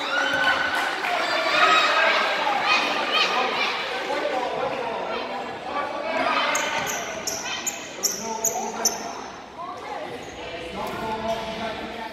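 Sounds of a basketball game in an echoing gym: unclear voices of spectators and players throughout, and from about halfway in a run of short, high sneaker squeaks on the hardwood floor.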